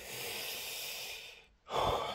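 A man's single long breath out, steady for about a second and a half, then his voice starting again.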